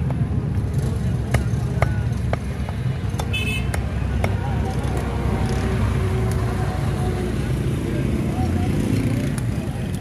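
A knife working a rohu fish against a wooden chopping block, with scattered sharp clicks and taps, over a steady low rumble.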